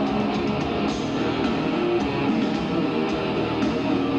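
Hard rock band playing live at full volume: electric guitars and drum kit, steady and dense throughout.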